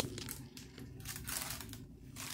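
Thin kite sheet rustling and crinkling as it is handled and turned over, with a sharp tick right at the start.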